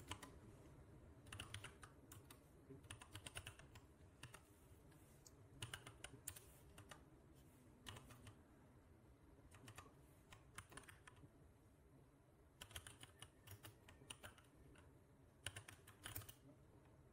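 Faint computer keyboard typing in short bursts of keystrokes with pauses between them, as a line of code is entered.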